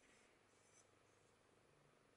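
Near silence, with faint scratchy rubbing of fingertips along the rusty, pitted edge of a steel butcher's cleaver blade, briefly at the start and again just under a second in.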